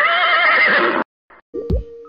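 Horse whinny sound effect, about a second long with a quavering pitch. About one and a half seconds in, a music sting with deep bass hits begins.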